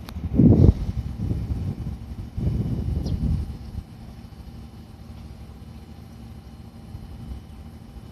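Fujikyu 6000-series electric train (a former JR 205-series set) running as it approaches the station, heard as a steady low rumble. Two louder bursts of low rumble come about half a second in and from about two and a half to nearly four seconds in.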